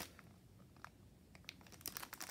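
Faint crinkling of a clear plastic sleeve on a pin-set backing card as it is turned over in the hand: a few short crackles against near silence, more of them near the end.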